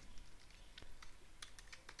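Faint typing on a computer keyboard: a run of separate, irregular key clicks.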